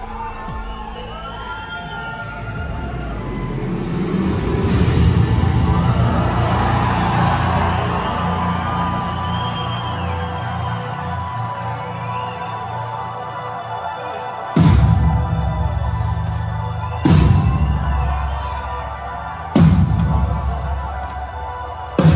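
Live rock band heard from the side of the stage: electric guitar holding long notes and a gliding lead line over the band, with crowd cheering. Late on, three loud full-band hits about two and a half seconds apart, each ringing out.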